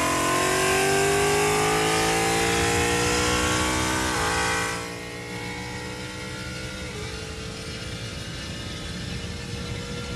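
Car engine at full throttle in a roll race, heard from inside the cabin. The pitch climbs steadily, with a quick gear change about four seconds in. Just after that the throttle lifts and it drops to a quieter, steady cruise with road noise.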